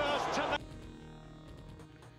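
Boxing broadcast audio: arena crowd noise with a voice over it, cutting off about half a second in. Faint steady background music is left after it.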